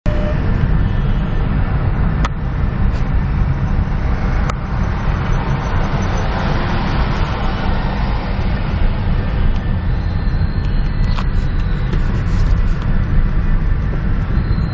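Steady low rumble of a car's engine and tyres heard from inside the cabin while driving slowly in a line of traffic, with two short clicks about two and four and a half seconds in.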